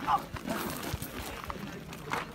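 Men's voices over scuffling footsteps and knocks on hard, gravelly dirt as two men grapple, with a short cry at the start.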